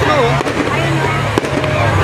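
Aerial fireworks exploding, with two sharp bangs about a second apart, over a crowd's voices.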